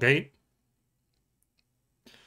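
A man's voice saying a brief "okay" at the very start, then near silence for the rest.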